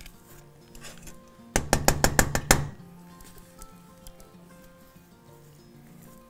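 A metal spoon knocks rapidly against a stainless steel mixing bowl, about eight sharp strikes in a second, to shake thick cake batter off into the pan. Soft background music plays throughout.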